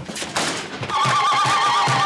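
A woman's ululation (zaghrouta), a loud, rapidly trilling high wail, starts about a second in over steady frame-drum beats, about four a second. Before it there are a few scattered knocks.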